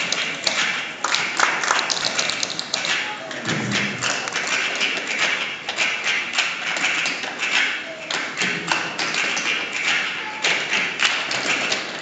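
Tap shoes of a group of dancers striking a stage floor: rapid, uneven clusters of sharp taps.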